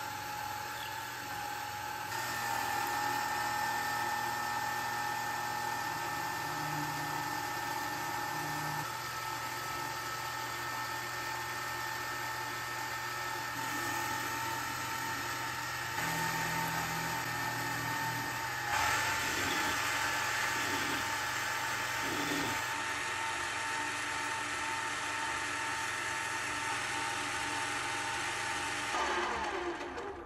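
Metal lathe running, its spindle giving a steady whine. A twist drill in the tailstock chuck bores into a spinning metal rod, and then a carbide insert tool turns it. The cutting sound shifts abruptly several times and stops just before the end.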